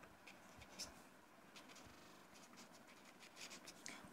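Faint scratching of a felt-tip marker writing on paper, a series of short strokes as words are written.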